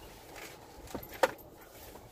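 A few light knocks and one sharp click a little over a second in, heard inside a parked car's cabin.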